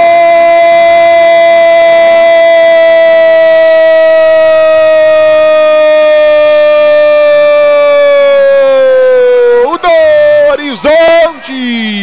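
A Brazilian football commentator's prolonged goal cry: one loud 'gooool' held for about ten seconds, its pitch sagging slightly near the end, then a few short shouted words.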